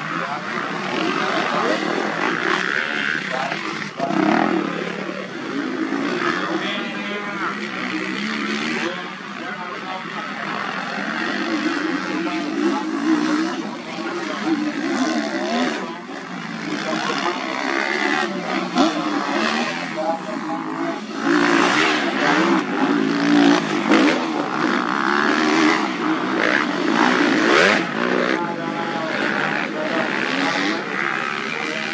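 Motocross bikes running on the track, their engine pitch rising and falling, with voices mixed in throughout.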